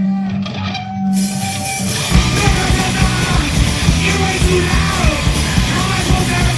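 Live punk rock band starting a song: a held low note, then loud distorted guitars, bass and drums crash in about two seconds in, with yelled vocals.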